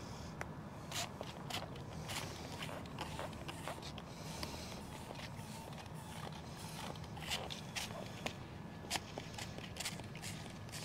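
Hand-held plastic trigger spray bottle spritzing liquid onto lemon tree leaves in a dozen or so short, irregularly spaced squirts.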